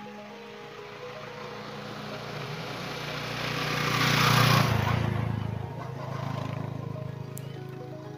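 A motorcycle passing close by: its engine grows louder, is loudest about halfway through, then fades away, over soft background music.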